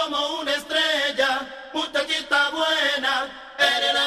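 Male voice singing unaccompanied in a slow a cappella passage, with held notes that bend in pitch and short breaks between phrases.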